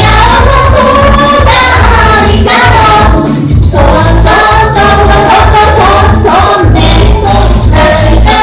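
A group of men and women singing together into handheld microphones, their voices carried by amplification, over a strong continuous bass part.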